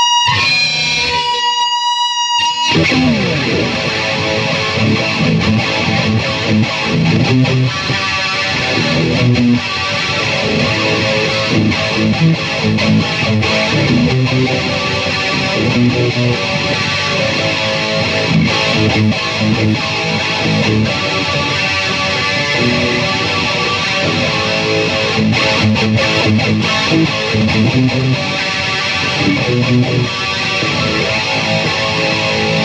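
Distorted electric guitar, a V-shaped solid-body with a locking tremolo: two high held notes in the first couple of seconds, then heavy, continuous riffing and chords.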